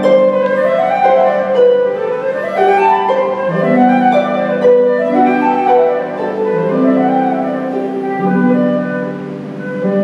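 Concert flute and pedal harp playing a slow romantic piece: the flute holds a singing melody of long notes over rolling harp arpeggios.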